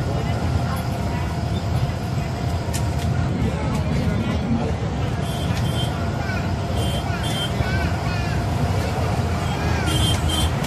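Steady low drone of an Ashok Leyland Viking diesel bus cruising on the highway, with engine and road noise heard from inside the passenger cabin.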